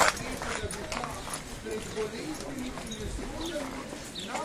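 Horses' hooves clip-clopping on a paved street, with people talking in the background.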